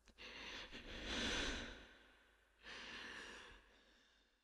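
A person's breaths, slowed down and smeared with reverb: one long, swelling breath, then a shorter one about two and a half seconds in, fading out.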